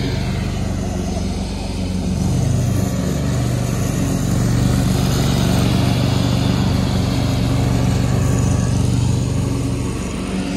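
Riding lawn mower's engine running steadily while mowing, growing a little louder about four seconds in as the mower comes closer.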